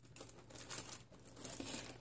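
Plastic crinkling and rustling in irregular bursts as plastic packaging is handled.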